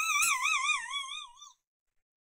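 A single high, wavering note with a steady vibrato, drifting slightly down and fading out about one and a half seconds in.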